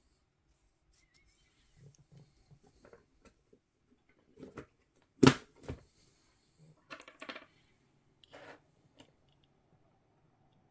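Short plastic clicks and knocks as a RAM stick is handled and pushed into a motherboard memory slot, with one sharp, loud click about five seconds in. A few more clicks follow a couple of seconds later.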